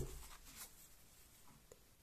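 Near silence, with faint soft rubbing of tarot cards being handled and a couple of light clicks about a second and a half in as cards are drawn from the deck.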